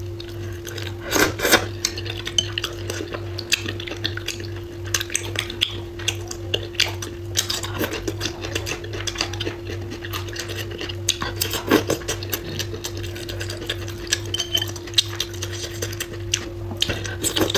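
Chopsticks clicking and scraping against a ceramic bowl of braised stew as food is picked out, in short irregular clicks, over a steady low hum.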